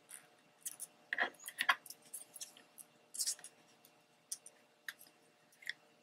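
Paper handled by hand: short rustles and crinkles of cardstock pieces being pressed and slid into place, loudest a little after a second and about three seconds in, with a few light ticks after.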